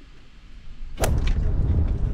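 Quiet room tone, then about a second in a sudden sharp swish, after which wind buffets the microphone loudly and unevenly.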